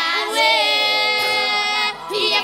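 A boys' vocal group singing a cappella in close harmony, holding long notes together.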